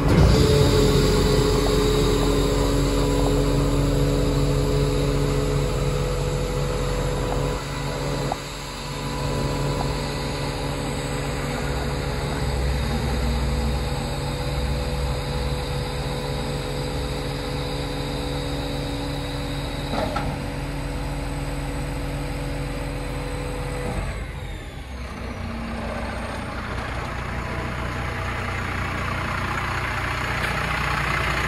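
Diesel engine of an Iveco Stralis garbage truck running steadily at idle, with a few steady tones over it. The sound dips briefly about eight seconds in and again near twenty-five seconds.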